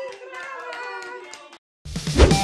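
Hands clapping with voices over it, just after birthday candles are blown out; it cuts off abruptly and music starts right at the end.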